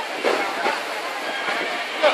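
Steady running noise aboard a moving boat, with faint voices in the background.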